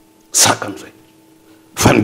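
A man sneezing: two short bursts, one about a third of a second in and a sharper, louder one near the end.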